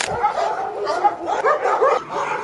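Several caged dogs barking and yipping in quick, overlapping calls.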